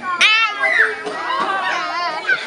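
Young children's voices shouting and chattering, with one sharp high-pitched shout just after the start.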